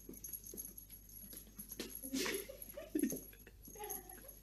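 A domestic cat making a few short, low calls around the middle, among scattered light knocks and clatter as it moves about.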